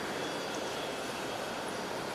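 Steady, indistinct hubbub of a large crowd milling about in a church, with no single voice or event standing out.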